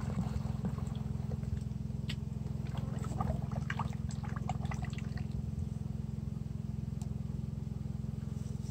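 Sugar syrup pouring from a plastic pail into a hive-top feeder, a splashing trickle that thins out a few seconds before the end, over a steady low hum.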